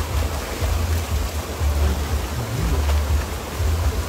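Rushing water of a small river waterfall, a steady hiss, with gusts of wind rumbling on the microphone.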